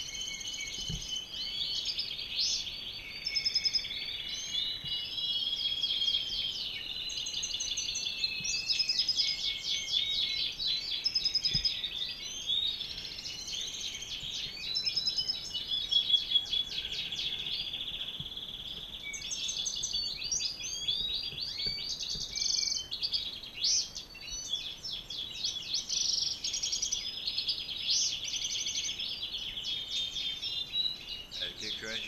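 Male European goldfinch singing a long, continuous twittering song of rapid trills and buzzy notes, courting a female he has just been paired with.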